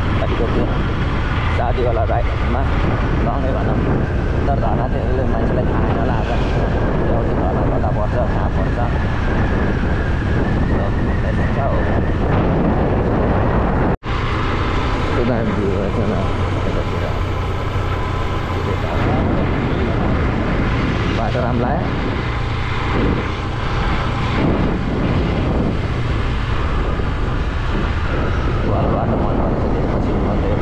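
Motorcycle engine running while the bike is ridden, with heavy wind noise on the microphone. The sound cuts out for an instant about halfway through.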